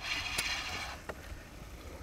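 Spinning reel whirring as a hooked bass is fought on a light spinning rod, with a couple of sharp clicks; it eases off about halfway through.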